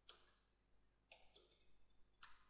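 Near silence, with two or three faint computer keyboard keystroke clicks, the first near the start and the others about a second in.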